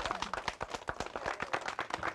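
A small group of people clapping, many uneven claps overlapping, with a few voices calling out underneath.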